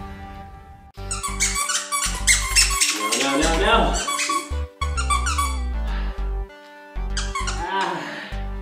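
A plush squeaky dog toy squeaking rapidly as the dog chews and mouths it, with a burst of squeaks in the first half and more near the end. A guitar music track plays underneath.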